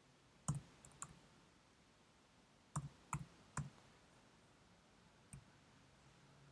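About seven short, sharp clicks of computer mouse and keyboard use, in small irregular groups over a near-silent room, as a file name is entered and saved.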